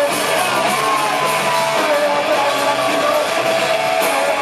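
Rock band playing live and loud: electric guitars over drums, steady and without a break.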